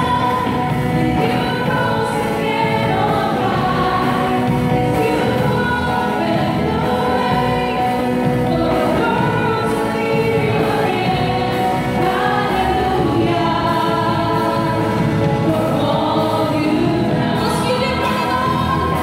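A woman singing a gospel worship song into a handheld microphone, with musical accompaniment.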